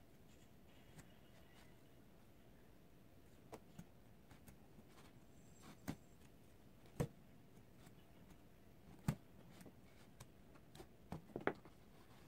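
Hands handling a doll's synthetic hair and plastic head in an otherwise near-silent room: sparse, soft taps and clicks, the loudest about seven and nine seconds in, with a quick cluster near the end.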